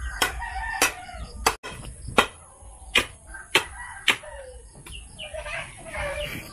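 A steel bar knocking down into the soil at the base of a wooden fence post as the earth is tamped, about seven sharp knocks roughly two-thirds of a second apart, stopping about four seconds in. A rooster crows in the first second, and chickens call near the end.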